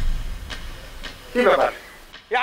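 A sudden low boom that fades away over about a second and a half, with a short spoken word about a second and a half in.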